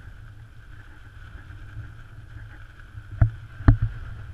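Steady low rumble of wind on the microphone with a faint steady hum above it, then three sharp knocks in the last second.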